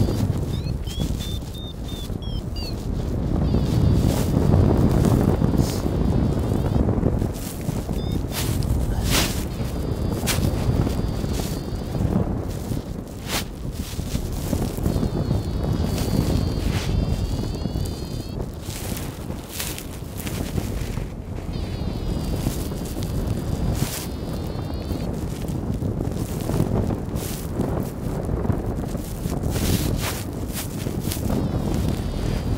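Wind buffeting the microphone in gusts, a heavy low rumble that swells and eases, with scattered sharp clicks and faint high wavering tones that come and go.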